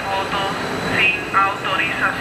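Subway train moving through a station, its steady running noise under a voice speaking.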